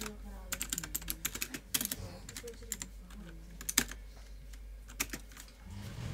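Typing on a computer keyboard: quick runs of keystrokes, densest in the first two seconds, then a few scattered key presses.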